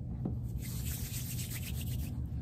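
Palms rubbing together as they roll a small piece of polymer clay into an oval, a soft, hissy rubbing that starts about half a second in and lasts over a second.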